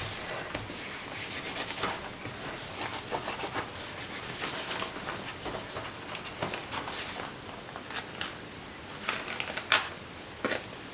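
Hands rubbing and pressing a scrap of printed paper flat onto wet acrylic paint in an art journal, a continuous papery rustle of small strokes, done to lift off some of the paint. Near the end the paper is peeled away with a few louder crackles.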